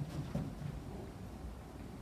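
Quiet room tone in a small room, with a faint steady low hum and no distinct event.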